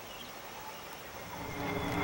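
Faint, steady background noise with no distinct event, in a lull between stretches of music; it swells slowly near the end.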